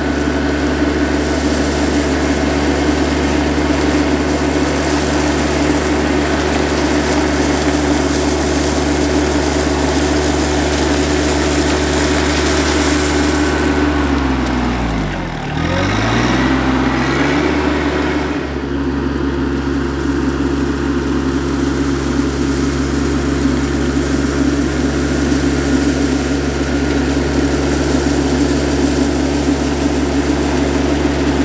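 RK 24 subcompact tractor's diesel engine running steadily as the tractor drives on gravel. About halfway through it passes close by, where the engine note bends down and back up and the level dips briefly.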